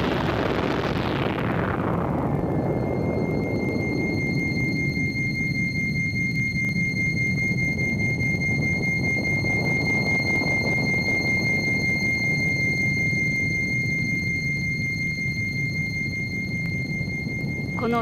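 Sound effect of an H-bomb explosion's aftermath: a wide roar that dies down over the first two seconds into a steady low rumble. A steady high-pitched whine comes in about two seconds in and holds over the rumble.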